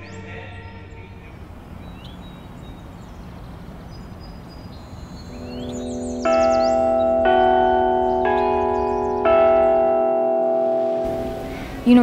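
Clock-tower bells chiming four notes about a second apart, each ringing on into the next and dying away over a few seconds, after a stretch of faint outdoor background.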